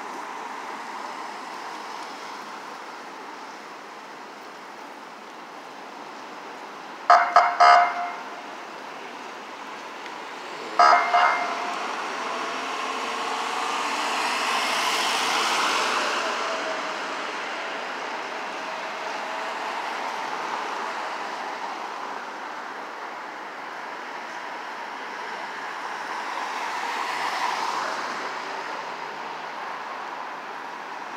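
Street traffic with a vehicle horn: three quick toots about a quarter of the way in and a short blast a few seconds later. An ambulance then drives close past, its noise swelling and fading, and another vehicle passes near the end.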